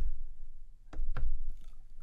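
Fingers tapping the silicone pads of a Synthstrom Deluge groovebox while typing a song name on its pad grid: three short knocks, one at the start, one about a second in and one just after, over a low steady hum.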